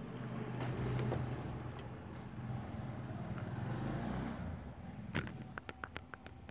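A motor vehicle's engine running in the background with a low, steady hum that swells twice. A little past five seconds in comes one sharp click, followed by a quick run of lighter clicks and taps as the soldering iron is handled.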